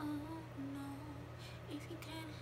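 A woman singing softly in a low voice, a few long held notes without clear words, close to humming, over a faint steady low hum.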